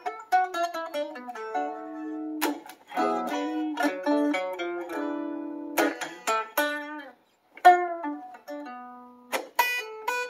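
Gibson ES-335 guitar playing a blues phrase of picked single notes and short struck chords. There is a brief silent break a little past the middle before a sharp plucked note, leaving space in the line.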